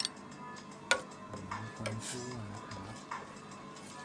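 A metal ladle clicking against the side of a stainless steel pot while stirring coffee: a sharp tick about a second in, then a few lighter clicks.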